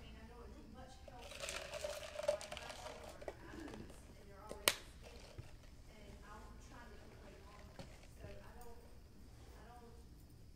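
Faint, distant speech across the room, with a short rustle in the first few seconds and one sharp click near the middle.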